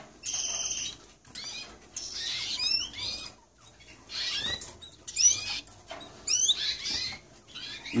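Melanic Spanish Timbrado canaries giving short, high-pitched chirping calls in little clusters about once a second, with a brief buzzy note near the start.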